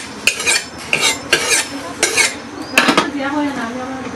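A metal ladle clinking and scraping against a metal kadai (wok) and a steel pot lid: about seven sharp, irregular clinks over three seconds.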